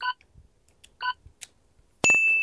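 Short electronic timer beeps, one a second, heard twice: a stopwatch sound effect counting the tripod setup time. Faint clicks of the tripod being handled fall between the beeps.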